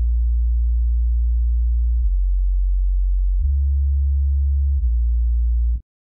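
Xfer Serum sub-bass patch, a single sine wave with attack and release added to avoid clicks, playing a line of four long, very low notes. The pitch steps down about two seconds in, back up a little later, and changes once more before the notes stop abruptly.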